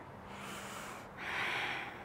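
A woman breathing slowly and audibly during a held stretch: a soft breath, then a louder breath out a little after a second in.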